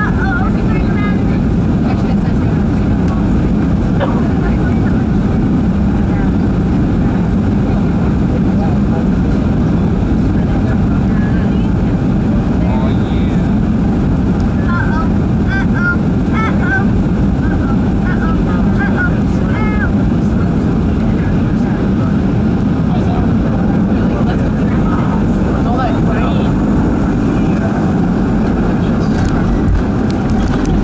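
Steady, loud, even low rumble of a Boeing 737-400's CFM56 engines and rushing airflow, heard inside the cabin from a seat over the wing during final approach with the flaps extended.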